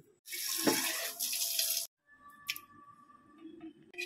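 Water running from a tap into a steel pot for about a second and a half, then cutting off abruptly, followed by a faint click.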